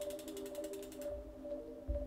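Soft background music of long held notes, with a faint rapid ticking in the first second.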